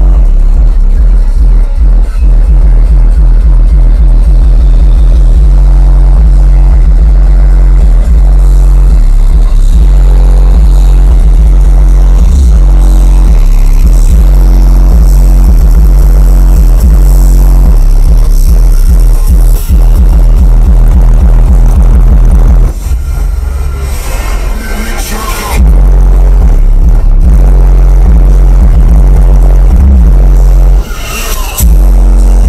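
Bass-heavy music played very loud through a car audio system's subwoofers. Its deep, steady bass fills the sound, and it cuts back for a few seconds about three quarters of the way through.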